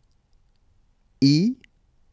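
A single voice saying the French letter "i" once, briefly, a little over a second in. Otherwise near silence.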